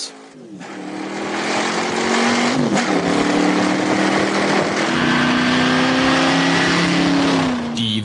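Weineck Cobra replica's V8 engine accelerating hard through the gears, heard from the cockpit. Its note climbs and drops at gear changes about two and a half and five seconds in.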